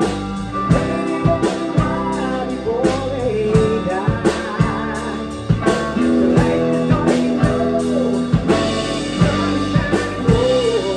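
A small rock band playing live in a room, with a drum kit, electric bass and electric guitar. The drums keep a steady beat under sustained bass notes and a wavering melodic line.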